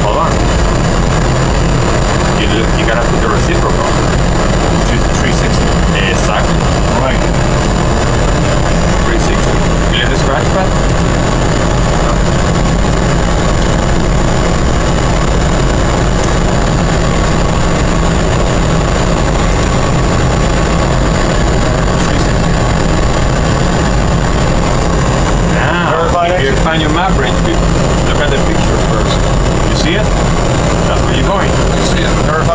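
Steady flight-deck noise in a Boeing 777 cockpit: a constant low rumble with a thin, steady high whine above it. Brief low voices come in near the end.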